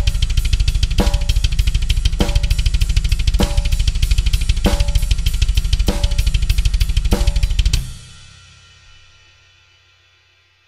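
Metal drum beat on a drum kit: very fast double-bass-pedal kick drum strokes under a snare hit about every 1.2 seconds and cymbals, stopping suddenly about 8 seconds in and leaving the cymbals ringing out. The kick drum's trigger is pulled during the beat: the kicks keep the same speed but lose their clicky, defined attack.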